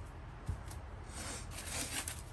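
Handling noise: a soft thump about half a second in, then rustling as an artificial vine with plastic leaves is picked up and handled.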